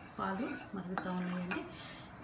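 Wooden spatula stirring milk and sugar in a steel kadai, scraping and knocking against the pan, with a sharp click about halfway through and another a moment later.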